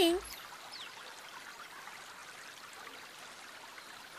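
Steady running-stream ambience, with a faint bird chirp about a second in.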